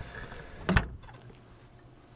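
A single sharp click about three quarters of a second in, from a hand on the door of a Kings 80-litre fridge mounted in a ute canopy.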